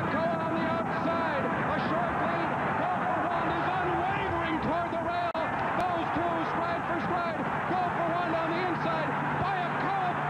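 Racetrack grandstand crowd cheering and shouting through a horse race's stretch duel: a dense, unbroken din of many voices, with a brief dropout about five seconds in.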